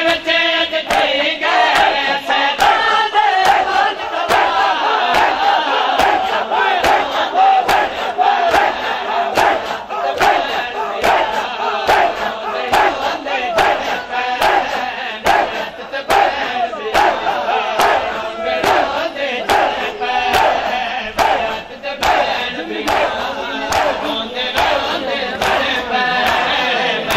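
A crowd of men chanting a noha in unison with matam: open-handed slaps on bare chests land together about twice a second, a steady rhythm under the massed voices.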